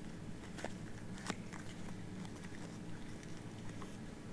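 Faint rustles and small clicks of hands fumbling at a table, getting out a cigarette, with one sharper click about a second in, over a steady low hum.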